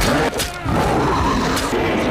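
Film soundtrack of a Bigfoot creature letting out a loud, harsh, rasping roar.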